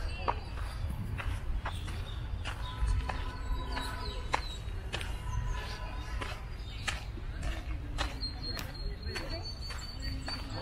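Footsteps on a dirt garden path, irregular crunchy steps about every half second to a second, over a steady low wind rumble on the microphone, with faint distant voices.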